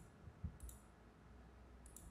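Faint computer mouse clicks, one pair about half a second in and another near the end, as the mouse button is pressed and released.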